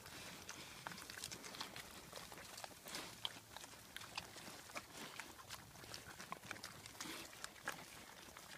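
Pigs eating scattered feed pellets off the ground, rooting through dry leaf litter: a faint, irregular run of crunching and smacking clicks.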